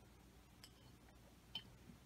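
Near silence: room tone, with two faint ticks, the second a light glassy clink about one and a half seconds in, as a beer glass is drunk from and lowered.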